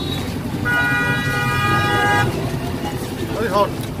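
A vehicle horn sounds one steady honk lasting about a second and a half, over the continuous low rumble of street traffic.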